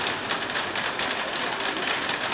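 Wooden roller coaster train rolling along its track, a steady clattering rumble.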